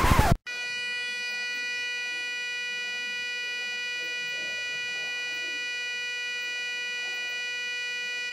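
Rap music cuts off abruptly about half a second in, followed by a steady electronic buzz-tone held at one unchanging pitch.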